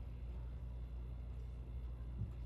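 Quiet room tone: a low steady hum with no distinct handling sounds.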